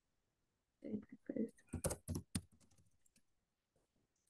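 Keystrokes on a computer keyboard: a quick run of clicks in the middle, thinning to a few scattered taps. It comes just after a short, indistinct bit of voice.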